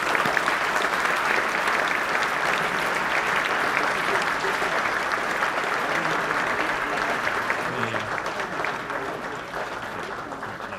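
Audience applauding steadily, a dense patter of many hands clapping that tapers off over the last couple of seconds.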